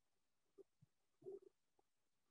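Near silence: room tone with a few faint, short, low sounds, the strongest a little past halfway.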